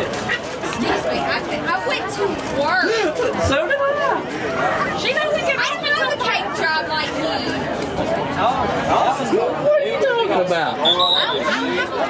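Indistinct chatter of several people talking at once close to the microphone, their words not clear.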